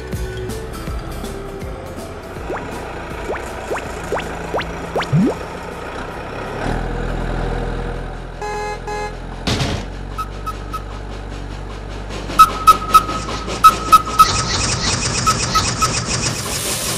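Cartoon soundtrack of background music with sound effects: a few quick rising whistle glides, then a low vehicle engine hum as the cartoon bus drives close by. In the last several seconds come a run of short repeated beeps and sharp clicks.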